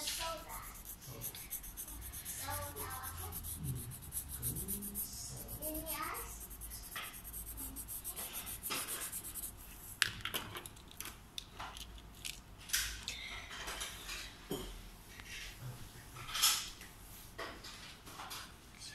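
Pencil scratching on paper in short scribbling strokes as part of a drawing is coloured in, with scattered clicks and knocks of things handled on a desk, the loudest knock near the end.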